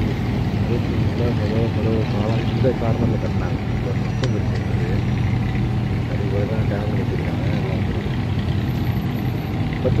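A steady low hum runs throughout, with quiet speech now and then over it.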